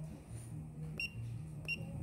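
The control panel of a Juki LK-1900BN bartack machine beeping as its keys are pressed: two short high beeps, about a second in and again near the end, over a low hum.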